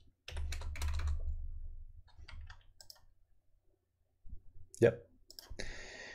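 Computer keyboard keystrokes clicking as figures are typed into a calculator, in two short runs with a pause of a little over a second between them.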